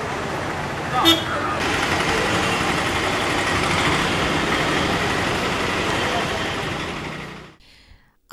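Busy street ambience at a bus stand: steady traffic noise and background voices, with a short sharp sound about a second in. It fades out near the end.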